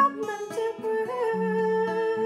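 A woman singing solo over an acoustic guitar, holding one long note through the second half of the clip while the guitar's low plucked notes go on beneath it.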